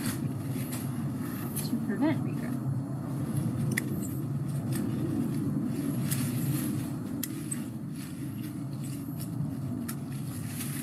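Hand pruners snipping through English ivy vines low on a tree trunk: a few separate sharp clicks over a steady low rumble.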